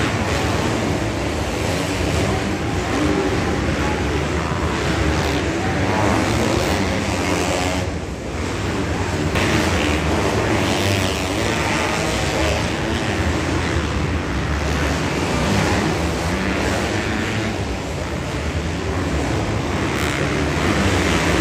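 Several motocross bikes racing around an indoor arenacross track, their engines revving hard and continuously, with a brief lull about eight seconds in.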